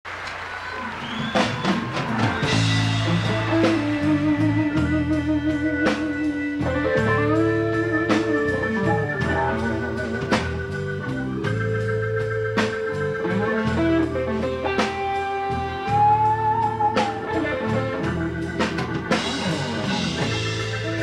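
Live blues band playing an instrumental intro: sustained organ-style keyboard chords, some wavering, over bass notes and drum-kit hits, with electric guitar. The music starts suddenly out of silence.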